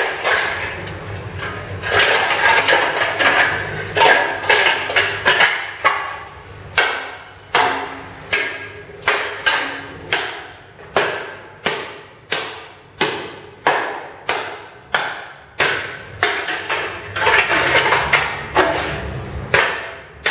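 Experimental noise performance: a run of sharp struck hits, each ringing out briefly. They fall at about two a second through the middle and come thicker at the start and near the end.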